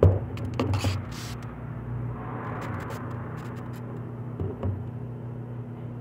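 A metal spoon knocking and clinking a few times, mostly near the start, as syrup is spooned over a sponge cake, over a steady low hum.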